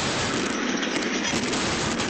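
A concrete highway noise-barrier wall crashing down after a tractor-trailer strikes it, heard through a security camera's muffled audio: one loud, steady roar with no separate bangs.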